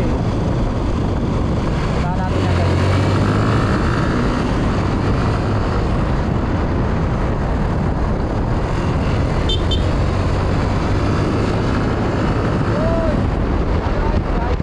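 Motorcycle on the move: a steady rush of wind noise on the microphone with the engine's low drone underneath, the drone growing stronger about two seconds in and easing off again near the end.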